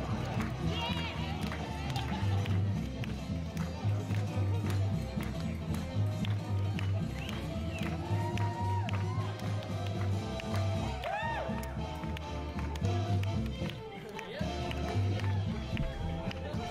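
Up-tempo swing song for dancers, with a steady beat and a strong rhythm section, pulsing bass notes.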